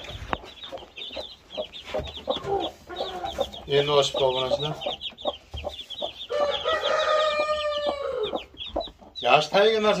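Roosters clucking, with one long crow about six seconds in, over a run of short high chirps.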